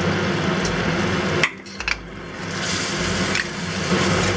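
Coated fried beef sizzling in a hot wok of sauce as it is tipped in and stirred with a spatula, with a couple of short spatula scrapes. The sizzle drops off suddenly about a second and a half in, then builds back up.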